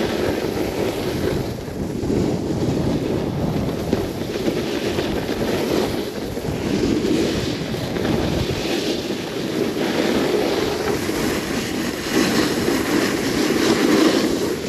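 Wind buffeting the microphone during a downhill ski run, with the hiss of skis sliding on snow swelling and fading every two seconds or so as the turns link.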